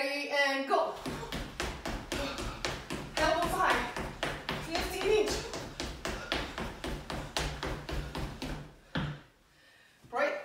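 Quick, even footfalls of running shoes striking a tiled floor during high knees and heel-to-butt kicks, several landings a second, stopping about nine seconds in.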